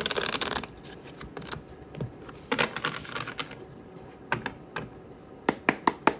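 The Unfolding Path Tarot deck being riffle-shuffled by hand: a rapid crackling cascade of cards at the start and another near three seconds, then several sharp clicks of the cards near the end.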